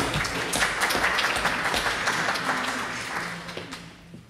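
Audience applauding, dying away near the end.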